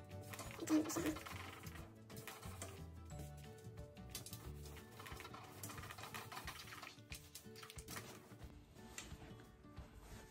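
Soft background music with faint scattered knocks and rubbing from a steam iron being set down and slid over suit fabric on an ironing board.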